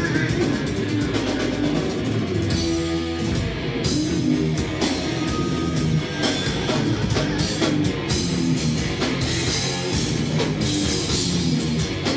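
A progressive metal band playing live: electric guitars, bass and drum kit.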